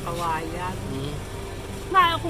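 A man's voice speaking quietly.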